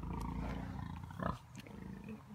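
A large pig grunting close by: a long, low grunt ending in a short, louder burst just over a second in, followed by quieter grunts.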